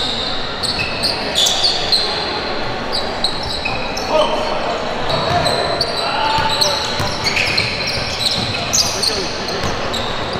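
Live gym sound of a basketball game: a basketball bouncing on the court as players dribble, many short high squeaks of sneakers on the floor, and players' voices calling out.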